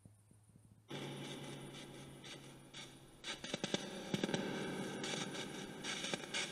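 Portal box (spirit box) radio-sweep device hissing with radio static that cuts in abruptly about a second in, with crackling clicks growing denser from about three seconds in.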